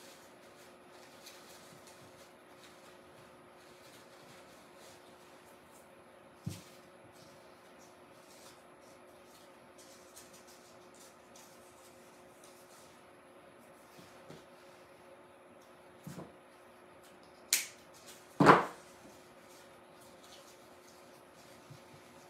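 Faint rustling and small clicks of artificial flower sprigs and leaves being handled and pulled apart, over a steady low hum. A few sharper clicks or knocks stand out, the two loudest close together about three-quarters of the way through.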